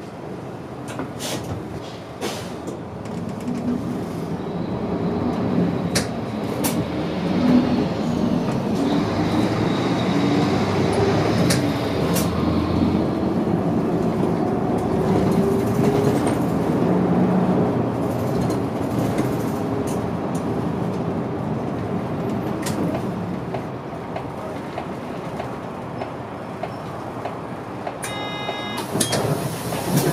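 City bus heard from inside the cabin, pulling away from a stop a few seconds in. The engine note rises and glides up in pitch as it accelerates, then it runs steadily at speed. Sharp clicks and rattles come now and then.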